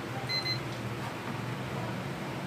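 Digital multimeter's continuity beeper giving one short, high beep as the test probes touch the rice cooker wiring, over a steady low hum.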